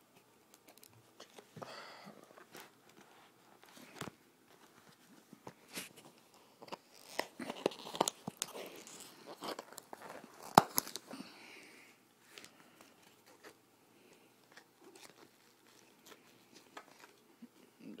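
Hands tearing and crinkling the wrapping on a small boxed package. Irregular rustles, rips and clicks, busiest from about seven to eleven seconds in.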